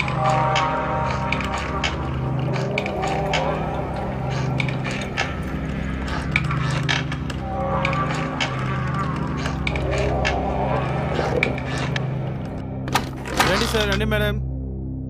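Horror film score: a steady low drone under wavering eerie tones, scattered with sharp clicks and crackles, and a few louder clicks with a falling tone near the end.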